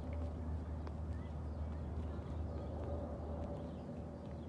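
Faint footfalls of running shoes landing on a concrete sidewalk during skipping, a few sharp clicks, over a steady low rumble of wind on the microphone.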